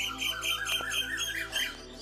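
A bird chirping in a quick series of short notes, about six a second, with a higher and a lower note alternating; the series stops shortly before the end.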